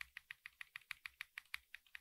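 Computer keyboard: keys tapped in a rapid, even run of faint clicks, about eight a second, as the cursor is stepped along a line in a text editor.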